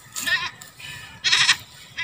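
A goat bleating twice, two short wavering calls about a second apart.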